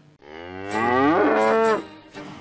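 A cow mooing once: one long call that rises in pitch and then holds steady before stopping shortly before the end.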